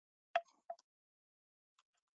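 Two short computer mouse clicks, about a third of a second apart, in the first second.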